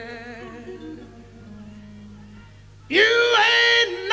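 Music with a singing voice: a sung phrase trails off, the music goes quieter for about two seconds, then a loud held note comes in near the end.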